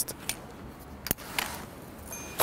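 Light clicks and knocks from an e-bike's folding handlebar stem as it is turned and folded, with one sharp click about a second in.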